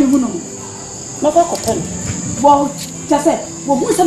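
Steady high-pitched insect chirring running under the scene, with short bursts of speech over it.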